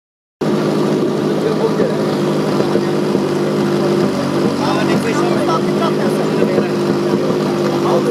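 Fire-sport pump engine running steadily with a constant loud hum, waiting for the start of the fire attack, with faint voices in the background.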